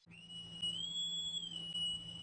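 A high, steady whistle-like electronic tone over a faint low hum, rising a little in pitch about half a second in and settling back down near the end: an edited-in sound effect for a title card.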